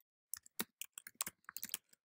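Typing on a computer keyboard: a quick, faint run of about a dozen key clicks entering a short line of text.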